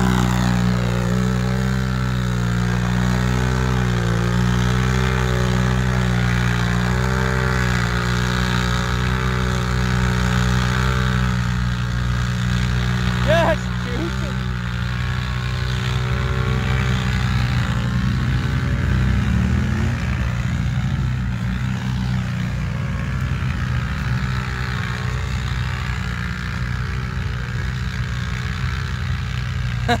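Can-Am Renegade ATV's V-twin engine held at high revs in one long, steady pull through deep mud, fading as it moves away in the second half.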